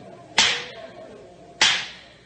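A gavel struck twice, about a second and a quarter apart. Each is a sharp rap with a short ringing tail, calling a court to order.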